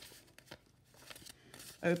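Faint rustle and crinkle of a sheet of white paper being folded in half a second time and creased.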